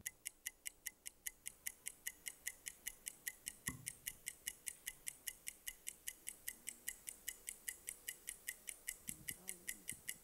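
Game-show countdown timer sound effect: a steady run of sharp, faint ticks, about four a second, marking the time left to answer.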